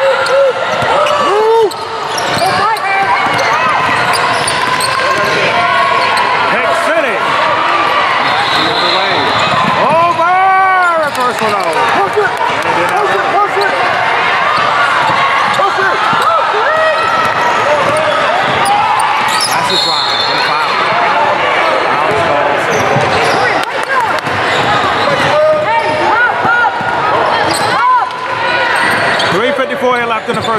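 Basketball dribbling on a hardwood gym floor during live play, under constant overlapping shouts and chatter from players, coaches and spectators in a large echoing gym.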